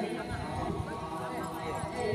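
Several people's voices talking and calling in a break between chants, over dense, irregular low thumping.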